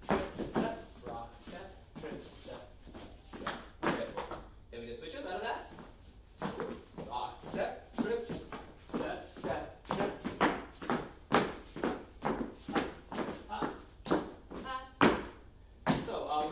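Swing dance footwork: shoes stepping and sliding on the studio floor in an even rhythm of about two steps a second, with a voice briefly calling steps a few times.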